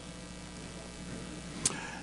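Steady low electrical hum and room tone from the church microphone and sound system during a pause in speech, with one short click near the end.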